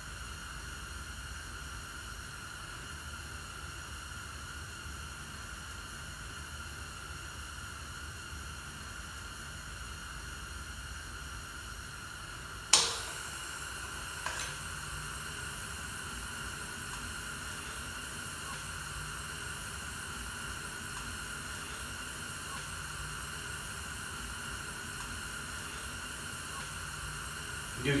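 Tank-top propane heater burners running with a steady gas hiss. About halfway through there is one sharp click, then a smaller one, as the second burner is lit.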